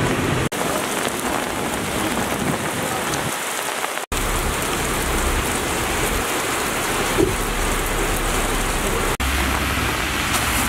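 Heavy rain pouring down on a wet city street, a steady hiss. It breaks off for a split second three times: about half a second in, around four seconds and near the end.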